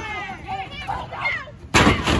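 A wrestler's body slammed onto the ring mat near the end: one loud, sudden thud with a short ring-out from the ring. Scattered shouting voices before it.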